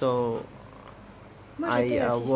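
Speech only: a voice holds a drawn-out syllable, pauses for about a second, then speaks again near the end.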